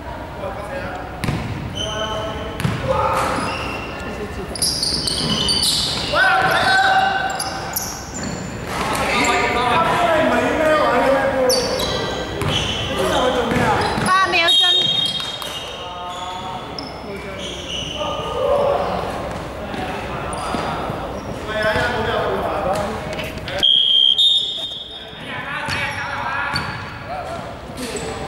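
Indoor basketball game echoing in a large sports hall: players' voices and shouts over the ball bouncing on the wooden court, with two short high referee-whistle blasts, one about halfway through and one near the end.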